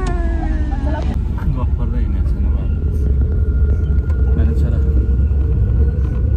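Steady low rumble of a car's engine and tyres heard from inside the moving car, with a high pitched voice in the first second and a faint steady whine after that.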